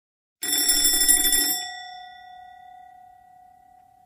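A bell sound effect rings loudly for about a second, then its tone rings out and fades over the next two seconds. It serves as a time-skip transition.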